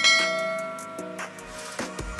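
A bell chime sound effect, struck once and ringing down over about a second, as the notification bell in a subscribe animation is clicked, over background music.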